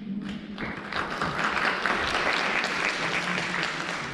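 Audience applauding in a theatre, swelling about half a second in and then holding steady.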